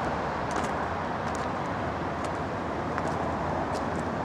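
Steady outdoor background noise of road traffic, with faint short crunches about every second from footsteps on gravel.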